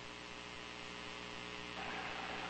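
Dead air on a NOAA Weather Radio broadcast: steady hiss with a low electrical hum running under it. The hiss grows a little louder near the end.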